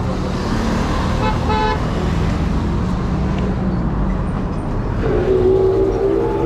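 Steady road traffic running close by, with a short car horn toot about a second and a half in and a longer, lower horn tone near the end.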